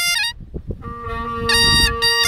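Highland bagpipes break off about a third of a second in, leaving a low wind rumble on the microphone. The steady drones sound again about a second in, and the chanter melody resumes halfway through.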